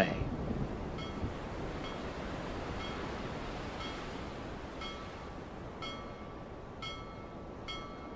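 Storm sound effect: a steady rush of wind and sea, with light metallic chime-like tings rung at irregular intervals from about a second in.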